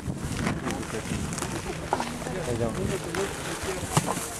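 Several people talking indistinctly at once, with a few short clicks and rustles of handling and a sharp click just before the end.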